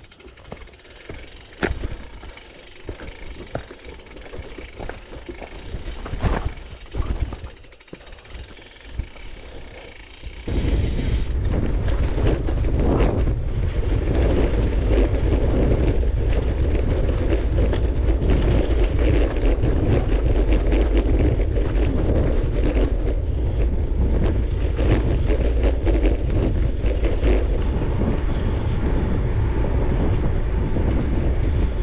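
Gravel bike ridden slowly over a rough forest trail, with scattered clicks and knocks from the bike and the ground. About ten seconds in, the sound jumps to a loud, steady rush of wind on the microphone and tyre rumble as the bike rolls fast along a dirt road.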